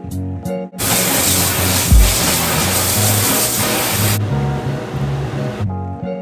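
Tap water running hard into a stainless-steel kitchen sink, then more softly for a second and a half before stopping, over background music with a plucked guitar. A low thump about two seconds in.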